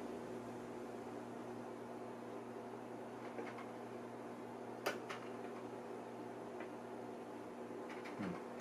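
Low, steady hum from the running IMSAI 8080 computer, with one sharp click about five seconds in and a couple of fainter ticks.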